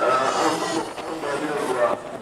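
A man's voice reading a prepared speech into a handheld microphone, with a short pause about a second in.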